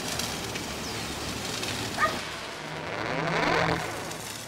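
A dog gives a short yelp about two seconds in, over steady outdoor background noise. Near the end a louder sound swells up over a low steady hum.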